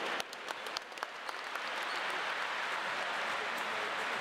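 Arena crowd applauding, with sharp separate claps standing out in the first second or so before settling into a steady wash of applause.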